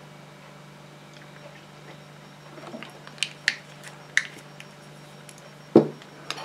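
Small glass cosmetic bottle being handled and set back down on the table: a few light clicks about three seconds in, then a single louder knock near the end. A faint steady hum runs underneath.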